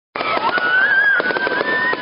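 Aerial fireworks crackling and popping in quick succession, with a high whistle sliding slowly upward through them.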